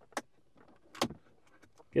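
Two sharp plastic clicks about a second apart as the Weetla phone mount's vent clip is pushed onto a car air-vent slat.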